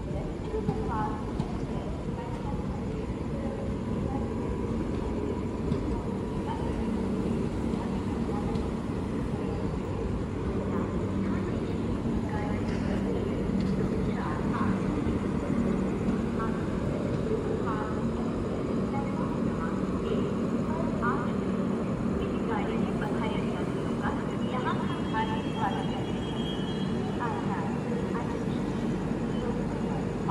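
Steady low hum of a long passenger train standing at the station, with faint indistinct voices of people on the platforms.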